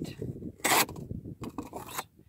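A Bestech Ascot's D2 flat-ground drop-point blade slicing through corrugated cardboard in one short, scraping cut about two-thirds of a second in, with fainter rustling of the cardboard around it.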